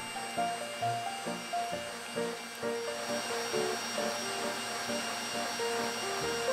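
Stand mixer motor running steadily at high speed, a whisk whipping egg whites in a steel bowl toward stiff peaks, with a steady high whine. Background music with a simple melody plays over it.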